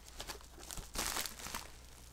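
Paper rustling and crinkling as a paper envelope is handled and opened, with a louder rustle about a second in.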